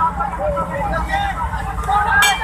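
People shouting and calling out over the low rumble of a boat's engine and rough sea, during a rescue of people in life jackets from the water.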